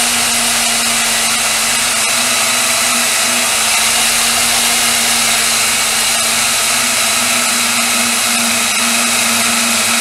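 Small benchtop band saw running steadily with an even hum, its blade cutting through a block of Delrin plastic at an angle.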